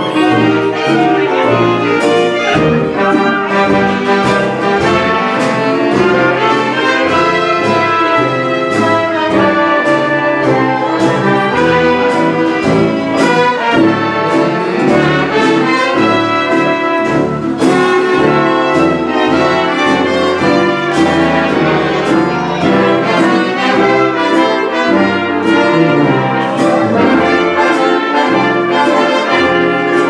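A 1930s-style dance orchestra playing a foxtrot with a steady beat, its brass section of trumpets and trombones carrying the tune.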